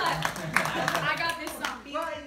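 A small group of people clapping, with voices talking over it; the clapping dies away near the end.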